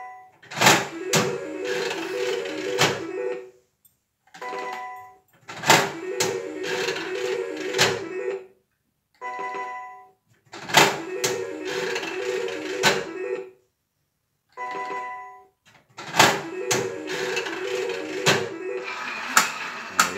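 A three-reel slot machine played four times in a row: each play opens with a short electronic beep, then a sharp clack as the lever is pulled and the reels spin to a rapid, pulsing electronic jingle for about three seconds, with louder clacks as the reels stop.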